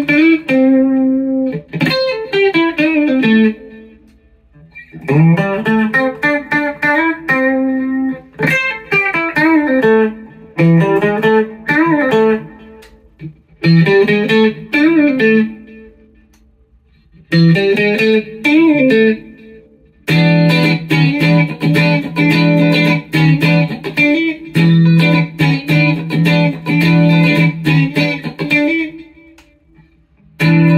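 Electric guitar, a custom-modified mid-60s Fender Mustang with a Fender Lace Sensor pickup and a humbucker, played through a Fender amp. It plays single-note phrases with string bends and slides, broken by short pauses. From about 20 seconds in it moves to a fuller, steadier passage of held notes.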